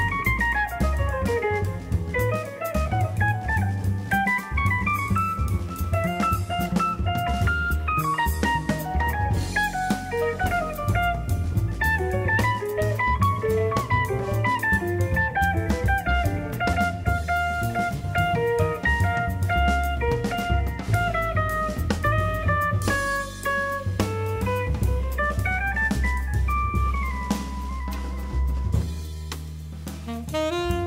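Jazz band playing: an archtop electric guitar solos in fast single-note runs over drum kit with cymbals and double bass. A tenor saxophone comes in near the end.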